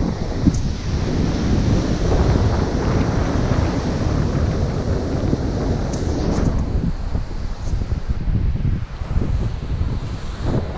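Wind buffeting the microphone over ocean surf on a beach: a loud, rough, uneven rushing, heaviest in the low end.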